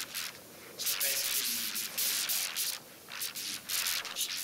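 Rustling, rubbing noise on the microphone in irregular bursts, each lasting under a second to about a second, with quieter gaps between them.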